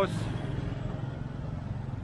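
Steady low rumble of road traffic, a motor vehicle running past on the street.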